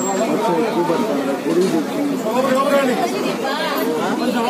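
People talking: several voices in indistinct chatter, at times overlapping.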